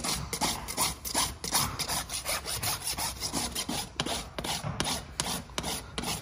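Farrier's hoof rasp, on its smooth finishing side, filing a horse's hoof wall in quick, even strokes, roughly two or three a second. It is smoothing the outer edge of the hoof near the end of the trim.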